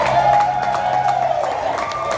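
Live band music with held notes over a steady low tone, with a crowd cheering and clapping.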